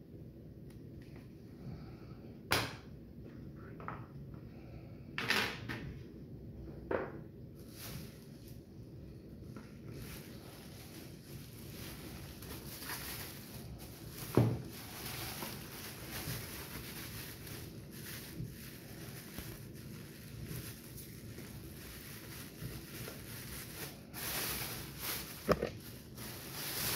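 Thin plastic bag crinkling and rustling as a plastic fan part is handled and unwrapped, continuous from about ten seconds in. There are a few sharp clicks and knocks before that, a low thump about halfway through, and more clicks near the end.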